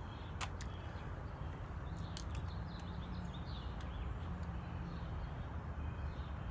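Outdoor ambience: a steady low rumble with faint bird chirps about two seconds in, and a few light clicks.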